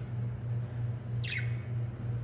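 A budgerigar gives one short chirp that falls in pitch, about a second in, over a steady low hum.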